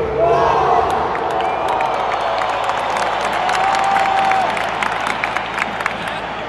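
Stadium crowd at a football match: thousands of fans cheering and shouting together in a steady loud roar, with individual voices and scattered claps standing out nearby.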